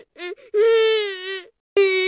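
The banana cat meme's crying sound effect: two short sobbing cries, then a long wavering wail lasting about a second, and another wail starting near the end.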